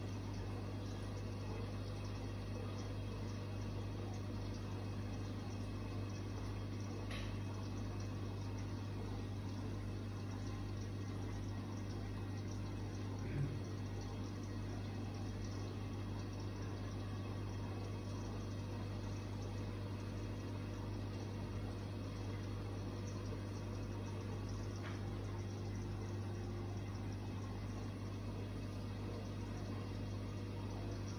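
Steady bubbling of an aquarium's air-driven sponge filter, with the continuous low hum of its air pump.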